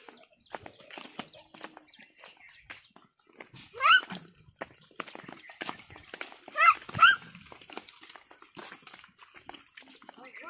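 Water buffalo herd and a child walking on a muddy track: frequent soft clicks and squelches of hooves and feet in the mud. Three short, loud, rising calls cut through, one about four seconds in and two close together near seven seconds.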